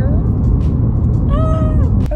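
Steady low road and engine rumble inside a moving car's cabin, with a short hummed voice sound that rises and falls near the end.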